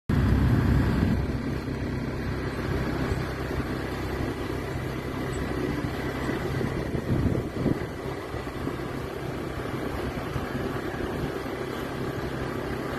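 Small motorbike engine running steadily while riding along a concrete road, with wind and road noise on the microphone. It is a little louder in the first second.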